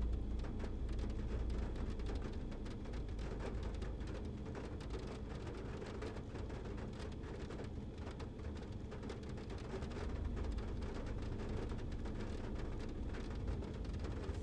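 Faint steady low background noise with light crackling throughout and no clear source.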